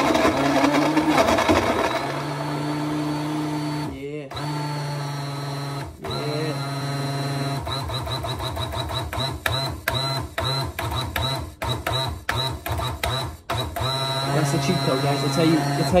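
Hamilton Beach personal blender's motor running, at first loud and rough as it chops frozen strawberries in milk, then steadier. It cuts out briefly twice, is then pulsed on and off in quick succession about a dozen times, and runs steadily again near the end.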